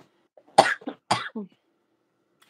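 A person coughing twice in quick succession, about half a second apart, each cough ending in a short voiced tail.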